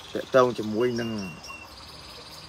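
Crickets chirring steadily and high-pitched in the background, with a person's voice drawing out a couple of long, gliding syllables over them in the first second and a half.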